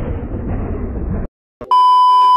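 Drum-heavy intro music cuts off suddenly about a second in. After a brief silence, a loud, steady test-tone beep of the kind played with TV colour bars starts near the end.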